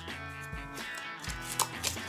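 Background music with steady held notes plays under a few short crackling rips as blue tape is peeled off a taped-up card package.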